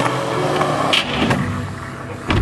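Small motor scooter's engine running as it rides past, with a couple of sharp clicks about a second in.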